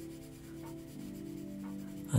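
Graphite pencil rubbing on drawing paper while shading, over soft background music holding steady notes.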